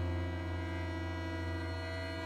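Contemporary chamber ensemble holding a sustained chord over a steady low drone, the tones unchanging throughout.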